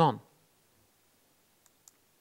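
A man's spoken word trails off at the start, followed by near silence and two faint clicks about a fifth of a second apart near the end.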